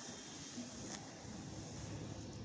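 Faint, steady background hiss of the broadcast's ambient sound between deliveries, with a faint tick about a second in.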